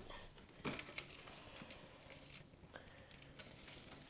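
Faint handling noise in a quiet room: soft rustles with a couple of sharp clicks a little under a second in.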